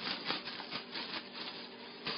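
Plastic food storage bag crinkling and rustling in quick, irregular crackles as a piece of catfish is pressed and coated in cornmeal inside it.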